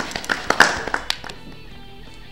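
A small group of people clapping briefly, the claps dying away after about a second, over background music.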